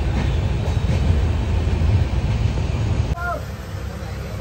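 Steady rumble and rattle of a moving Indian Railways passenger coach, heard from inside the coach. About three seconds in it cuts off abruptly to a quieter background with a brief voice.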